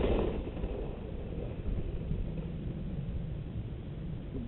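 Mountain bike rolling fast down a dirt trail over small bumps: a steady low rumble of tyres and frame, with wind on the camera's microphone.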